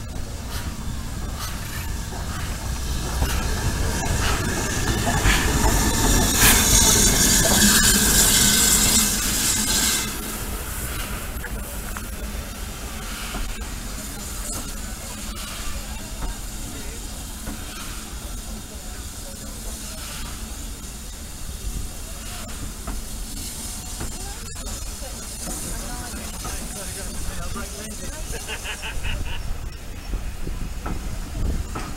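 Steam locomotive passing close by: a loud hiss of escaping steam that builds and stops sharply about ten seconds in, then the lower steady rumble of its coaches rolling slowly along the platform.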